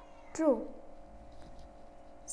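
A woman's voice saying the single word "true" once, drawn out with a pitch that curves down, followed by a faint steady hum.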